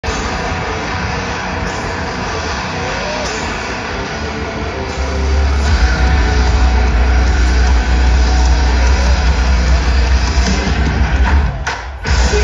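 Live rock concert heard from within the crowd: a dense wash of PA sound and crowd noise, with a deep steady bass drone coming in about five seconds in and making it louder. It breaks off briefly just before the end.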